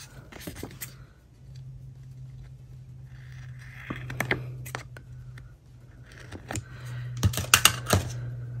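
Scissors cutting through a sheet of sticker paper: a run of crisp snips and blade clicks, thickest about halfway and again near the end, over a steady low hum.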